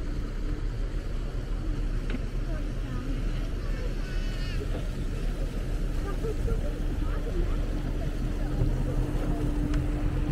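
Outboard motor of a small dinghy running with a steady hum over a low rumble as it passes. About four seconds in there is a brief high-pitched call.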